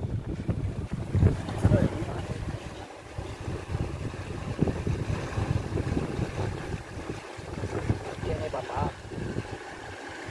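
Wind buffeting the microphone in gusts: a loud, uneven low rumble.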